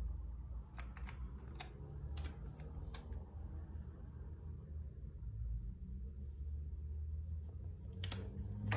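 A paper planner sticker crackling a few times as it is peeled and pressed onto a planner page, the sharp ticks bunched in the first few seconds, over a steady low hum.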